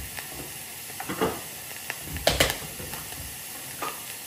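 Onion and garlic sizzling in oil in pans on a gas stove, a faint steady hiss. Over it, a few sharp knocks and clatters of a jar and cup being handled as raw rice is fetched, the loudest a brief dry rattle about two and a half seconds in.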